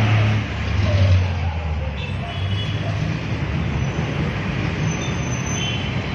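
Inside a city bus while it moves: steady low engine hum with road and traffic noise, swelling briefly about a second in.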